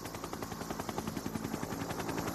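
Helicopter rotor beating in a fast, even pulse of many beats a second.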